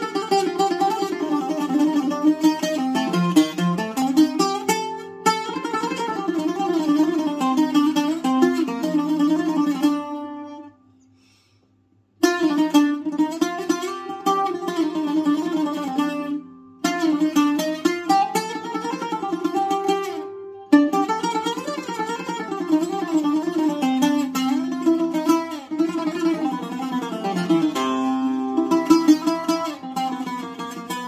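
Solo Greek bouzouki playing a taximi, a free improvisation in the Ousak mode with turns into Kiourdi and Hijaz, in fast picked melodic runs. It breaks off for about two seconds a third of the way through, with two shorter dips later.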